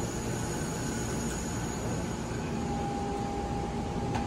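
Steady hum and low rumble of a stationary Amtrak passenger train idling at the platform, with a faint high whine throughout and a steady tone joining about two and a half seconds in.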